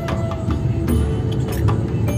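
Background music: an Indian folk-style tune with a held, sliding melody line over a steady drum beat.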